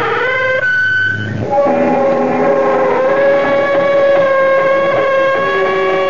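A drawn-out creak rising in pitch fades out in the first second and a half, typical of the show's creaking-door opening effect. Eerie theme music with long held, droning tones follows and carries on.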